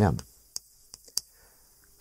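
Chalk on a chalkboard while a short word is written: three or four light, sharp clicks spread between about half a second and a second and a quarter in.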